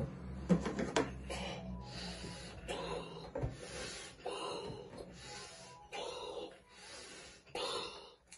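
A child blowing up a giant balloon by mouth: short breathy puffs of air, about one a second.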